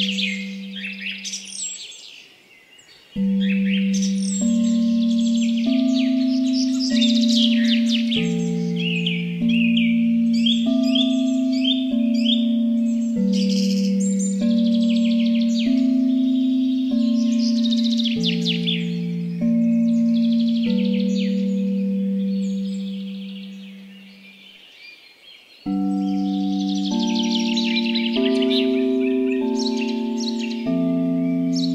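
Tibetan singing bowl tones struck in a slow sequence about once a second, each ringing on until the next and stepping between a few low pitches, over continuous chirping birdsong. The bowl tones die away twice, in the first seconds and again about three-quarters of the way through, before starting again.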